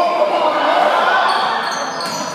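Several voices shouting at once during a basketball play under the basket, with sneakers squeaking on the hardwood gym floor in the second half.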